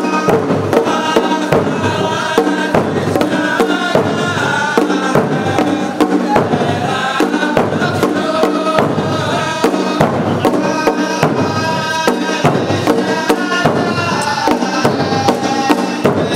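Najdi ardah: a chorus of men chanting in unison over a steady beat of large frame drums.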